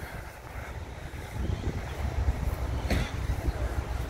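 Wind buffeting the microphone: an irregular low rumble that rises and falls in gusts, with a single short click about three seconds in.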